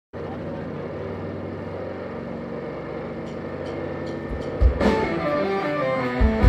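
Live psychedelic rock band playing: a held, droning chord for about four and a half seconds, then the band comes in with a loud hit and a moving riff near the end.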